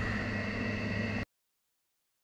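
Steady low hum with a thin high whine and hiss, which cuts off suddenly to dead silence just over a second in.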